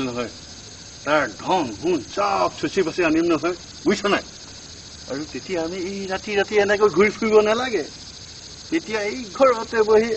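Voices talking in short stretches of dialogue, over a steady high chirring of crickets.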